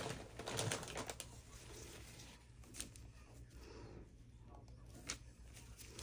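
Faint clicks and taps of small craft supplies being handled on a tabletop: a cluster in the first second, then single sharp clicks about three and five seconds in.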